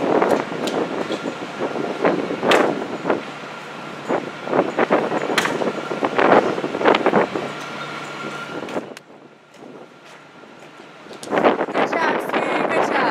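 Wind buffeting the microphone on an open ship deck, in irregular gusts with scattered sharp knocks and clicks, easing off for a couple of seconds near the end; a faint steady whine runs beneath.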